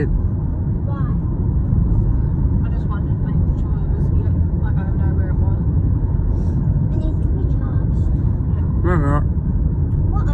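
Steady low rumble of a car on the move, engine and road noise heard inside the cabin, with brief faint voices now and then.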